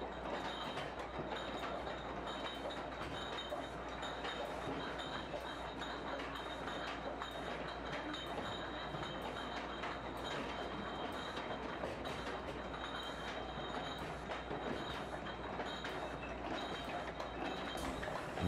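Wine bottling line running: rotary filler machinery with a steady mechanical hum and a thin high whine, and glass bottles clinking and rattling against each other and the star wheels.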